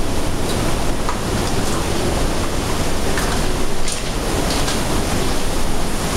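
Steady roar of Tunnel Falls, the waterfall on Eagle Creek's East Fork, heard from inside the rock tunnel cut behind it.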